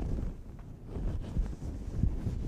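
A large piece of quilting fabric being lifted, held open and spread out by hand, rustling and flapping with a low rumble.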